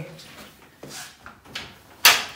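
Louvered wooden cupboard door being handled and opened: a few soft knocks and clicks, then a sharp clatter right at the end.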